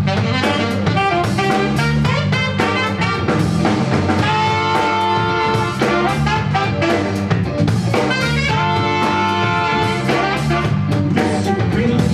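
Live funk band playing: saxophone and trumpet horn lines over electric bass, guitar and drum kit, with long held horn notes about four seconds in and again past the middle.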